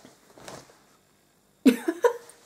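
A woman's short vocal outburst near the end, in two quick pulses, coughing or laughing in sound. A faint rustle about half a second in.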